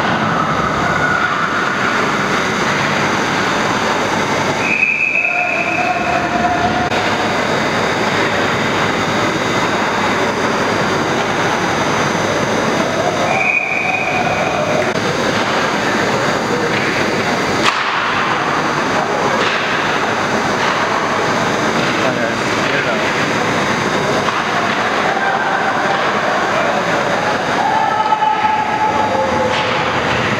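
Steady noisy ice-rink ambience during a hockey game in play, with indistinct voices from the stands. A few brief high-pitched calls stand out, about five and thirteen seconds in.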